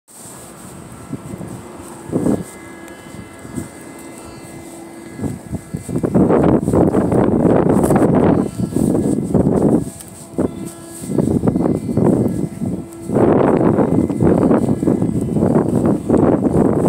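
Wind buffeting a phone microphone in gusts, quieter at first, then loud and rumbling from about six seconds in, dropping away briefly twice.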